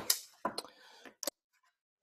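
Clear plastic ruler and acrylic drafting triangle being handled and set down on the drawing board: a few light plastic clicks and taps, the sharpest just after the start and again a little over a second in.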